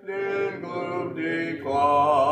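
A cappella hymn singing with a man's voice leading: several sung notes with vibrato, a short breath break near the end, and no instruments.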